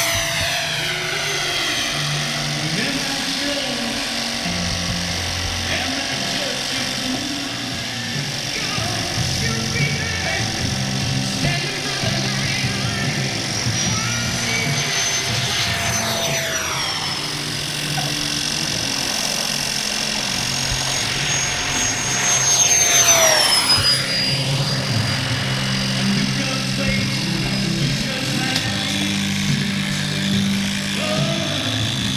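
Electric ducted fan of an E-flite Habu 32x model jet (Jetfan 80 mm nine-blade fan) whining at high pitch in flight, its pitch dropping sharply as it passes by twice, about halfway through and again about three-quarters through. Background music plays throughout.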